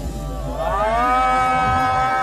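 A fan's single cheering scream as the song ends, slowed to half speed so it sounds lower and drawn out: it rises about half a second in, then holds one steady pitch.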